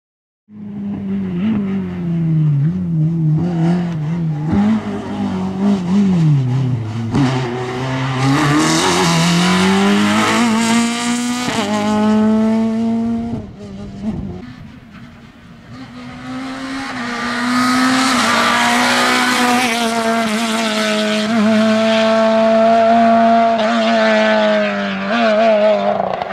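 Renault Clio 2 rally car's engine at full effort on a stage, revs rising and dropping through gear changes. The sound starts about half a second in. It fades for a couple of seconds midway as the car runs farther off, then comes back loud and high-revving as the car approaches.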